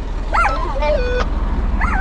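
A dog whining, with short high-pitched whimpers about half a second in and again near the end, over a steady low hum.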